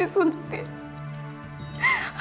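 A woman crying, her voice breaking into a few short whimpering sobs, over soft background music with a steady low drone.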